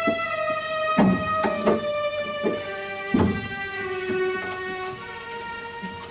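Background music of sustained, slowly shifting string-like chords. Several short knocks sound over it in the first half.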